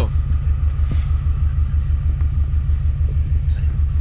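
Subaru Forester's engine idling, heard inside the cabin as a steady, evenly pulsing low rumble.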